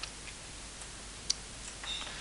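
A single sharp click a little over a second in, over a faint steady hiss.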